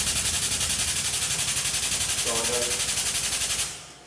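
Air-powered shop jack pumping as it lifts the front axle of a bus: a loud, rapid pulsing hiss at about nine pulses a second that cuts off sharply near the end.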